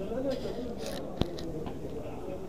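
People talking in the background, with one sharp click a little over a second in.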